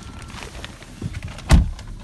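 Shuffling and handling noise, then a single heavy thump about a second and a half in: a Mercedes-Benz GL450's driver door shutting.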